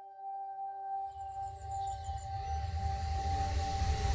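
Film soundtrack music: one long held note with a low rumble that comes in about a second in and slowly swells, and a brief faint high twinkle.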